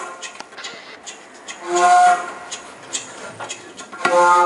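Transverse flute and a long wooden primitive flute playing sparse, long hooting notes together, one loud held note about two seconds in. Light clicks and taps sound between the notes.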